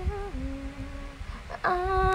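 A woman humming a song in long held notes. The note steps down to a lower, quieter tone, then a louder sung note begins about one and a half seconds in.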